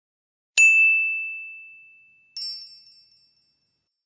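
Two edited-in ding sound effects. The first is a clear bell-like ding that rings and fades away slowly over about two seconds. The second, quieter and brighter, is a sparkly chime with several high tones that dies away within a second.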